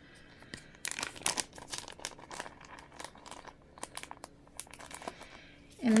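Plastic crinkling with a scatter of small light clicks, starting about a second in and fading after about four seconds, as chunky 2 mm hexagon glitter is shaken into a plastic tub.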